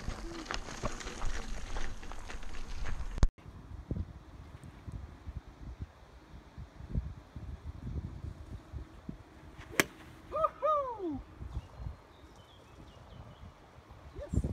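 Footsteps crunching on a gravel track for the first three seconds, ending in an abrupt cut. About ten seconds in, a golf club strikes a ball off a driving-range mat with one sharp crack, followed by a short falling cry.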